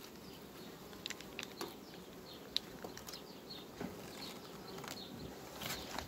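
Faint buzzing of honeybees flying around the hives, with a few light clicks and taps scattered through.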